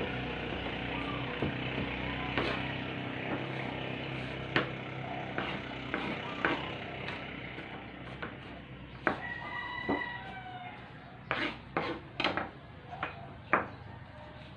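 A kitchen knife chopping fresh ginger on a plastic chopping board: irregular sharp knocks, more frequent in the second half. A steady low hum runs in the background and fades away over the first ten seconds.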